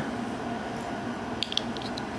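Faint steady room hum, with a few light metallic clicks about one and a half seconds in as a Strider PT folding knife is handled in the hand and its blade is being worked toward closing.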